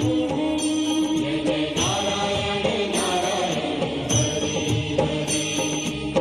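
Indian devotional music with chanting, opening on a long held sung note and continuing with layered voices and instruments.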